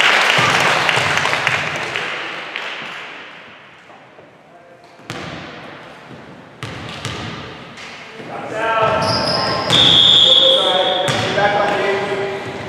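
A basketball bouncing a few times on a hardwood gym floor, each bounce ringing in the big hall. Near the start a loud burst of noise fades away, and near the end players call out over a high squeal.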